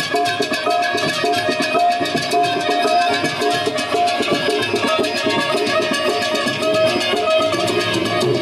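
Live Pothwari folk music from a harmonium, sitar and tabla ensemble: an instrumental passage with a repeating held melody note over a steady, busy percussion rhythm, without singing.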